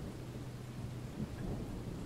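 Faint background ambience: a low rumble under a steady hiss, swelling slightly a little over a second in.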